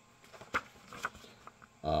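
A hardbound volume of magazines being opened and its paper pages handled: soft rustling with a sharp tap about half a second in and a smaller one about a second in.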